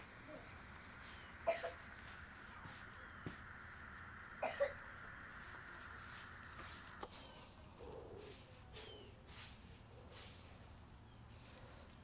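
Faint draws and exhales of a man puffing on a small vape, with two short, louder breaths about one and a half and four and a half seconds in.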